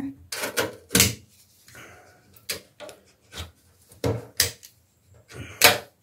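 Metal pliers clicking and scraping against a bathtub's overflow drain fitting as they pick off loose refinish paint lifted by rust underneath. The sound is a string of irregular sharp clicks with quiet gaps between them.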